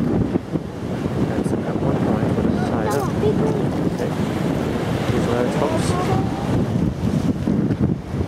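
Wind buffeting the microphone with a rough, uneven rumble, over the wash of sea water against the wharf.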